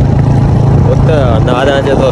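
Steady low rumble of a moving vehicle with wind noise on the microphone, as it travels along a street; a man's voice comes in over it about halfway through.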